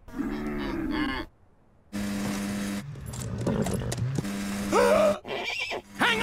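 Snowmobile engine running at a steady pitch, followed by a horse whinnying sharply just before the five-second mark.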